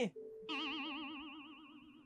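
Cartoon-style editing sound effect: a held tone with a fast, even wobble in pitch, starting about half a second in and slowly fading.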